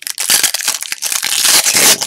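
Foil wrapper of a 1997 Topps baseball card pack crinkling and tearing as it is ripped open by hand, a loud dry crackle that grows louder in the second half.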